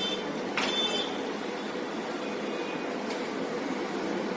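Steady rail noise of a train running into a station, with a brief high-pitched squeal a little over half a second in.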